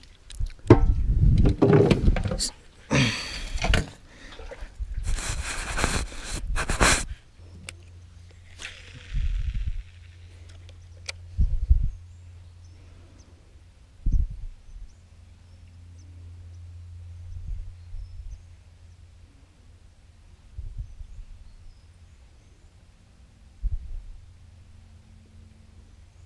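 Loud knocks and scrapes of a boat's wooden hatch cover and deck being handled, about seven seconds of them, then a quieter stretch with a low steady hum, a short hiss and a few soft knocks as a lure is cast and retrieved with a spinning rod.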